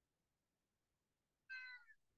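Near silence, broken about one and a half seconds in by a single brief, faint, high-pitched cry that falls slightly in pitch.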